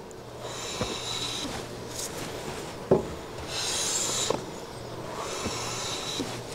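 A metal bench plane taking light shavings along the edge of a red oak board: about three rasping strokes, with a few knocks as the plane is lifted and set back down, the loudest about three seconds in. The passes test whether the shaving comes off only the high side of the edge.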